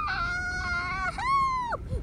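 A very high-pitched voice giving a long, drawn-out wail held at one pitch for about a second, then a second shorter cry that rises and falls, with a low rumble underneath.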